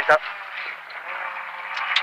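Rally car engine heard from inside the cabin, pulling out of a tight right-hand bend, its note rising slowly in pitch and loudness.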